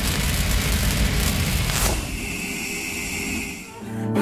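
Cinematic logo-intro sound effect: the rumbling tail of a deep boom, then a swell about two seconds in that leaves a steady high ringing shimmer, fading out just before the end.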